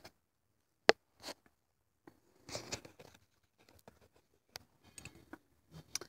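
Faint, scattered short scratches and taps of a chalk stick drawing on a hard plastic toy horse, with one sharp click about a second in.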